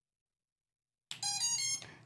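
An FPV quad's ESCs playing their power-up tones through the brushless motors as a 6S LiPo is connected: a short tune of stepped electronic beeps, rising in pitch, starting about a second in. The tones signal that the ESCs have powered up and initialised on the new battery.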